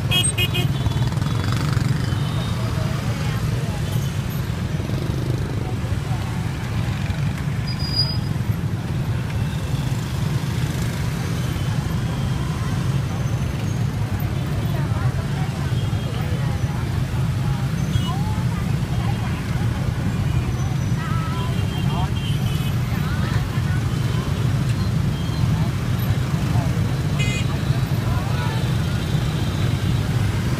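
Heavy motorbike and scooter traffic: many small engines running together in a steady low rumble, with a few short horn toots.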